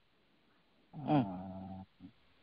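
A man's voice: one short drawn-out hum or 'euh' at a steady pitch, held for under a second and starting about a second in.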